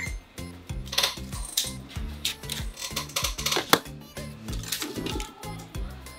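Background music with a steady beat, over a few sharp plastic clicks, the loudest about two thirds of the way in, as the latches of a ThinkPad X250's external battery are released and the battery is slid out of its bay.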